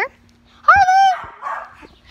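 A dog gives one drawn-out, high-pitched bark about three quarters of a second in, lasting about half a second.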